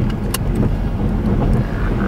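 Car interior road noise: a steady low rumble of the engine and tyres while driving on a rough, broken road. A single sharp click comes about a third of a second in.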